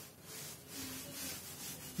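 A board duster is rubbed across a chalk blackboard in several faint wiping strokes, erasing chalk writing.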